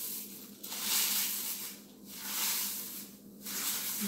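Dry, crunchy sun-dried shiso leaves being crumbled by hand into a plastic bowl: a crisp crackling rustle that comes in a few swells as the hands squeeze.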